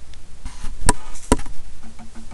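A light tap, then two sharp knocks on a hard surface about half a second apart.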